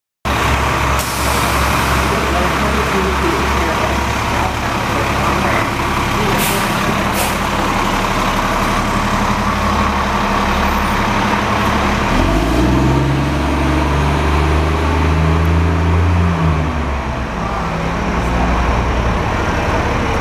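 Orion VII diesel transit bus engine running steadily, then pulling away: about twelve seconds in the engine note rises and holds for several seconds, then drops back. Two brief sharp sounds come a few seconds before it moves off.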